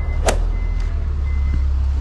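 Steady low rumble of a motor vehicle running, with a single sharp click about a third of a second in and a faint, high, on-and-off beep.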